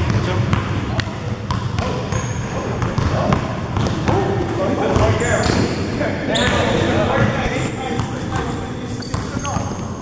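Basketball bouncing repeatedly on a gym floor during live play, with sneakers squeaking on the court.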